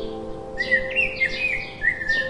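Sparrows chirping, a quick run of short calls from about half a second in. Soft background music with held notes that fade away underneath.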